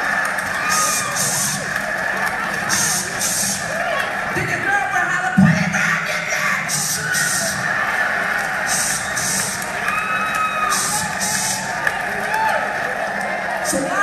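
Crowd noise and cheering from a comedy recording played over a club's sound system, with a pair of short hissing sounds repeating about every two seconds.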